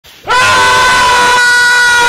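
A woman's loud, long scream of "Noooo!", held on one steady pitch and beginning a moment in.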